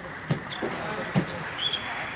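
Table tennis rally: a few sharp knocks of the ball off bats and table mixed with thuds of players' feet on the court floor, with a brief high shoe squeak near the end, over a murmur of voices in the hall.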